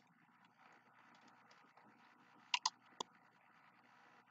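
Three short, sharp clicks about two and a half to three seconds in, the first two close together, over faint room noise.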